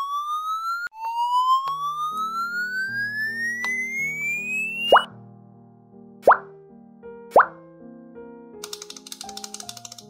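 Cartoon sound effects: a whistle-like tone gliding upward, sounded twice with a pulsing wobble, then three quick rising 'bloop' pops about a second apart over light background music, with a brief sparkly rattle near the end.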